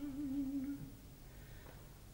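An unaccompanied operatic tenor voice holding a sung note with vibrato, fading out about a second in, followed by a quiet pause.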